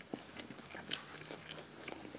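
A person chewing a mouthful of green candy rabbit close to the microphone, with irregular small mouth clicks.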